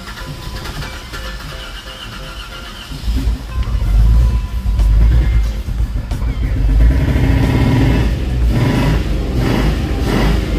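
A Jeep Wrangler engine that has been hydrolocked cranks and catches about three seconds in, then keeps running loudly. It sounds bad, and the owners suspect low compression.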